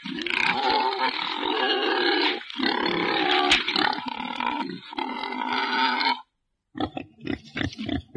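Wild boar giving loud, harsh squealing roars in three long stretches, then after a brief break a run of short, quick grunts near the end.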